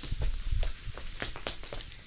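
A person getting up off a sofa and walking across a small room: a few low thumps in the first second, then scattered footsteps, clicks and clothing rustle.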